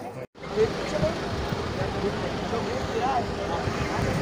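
A brief dropout, then a crowd's overlapping voices over a steady vehicle engine hum and a low rumble.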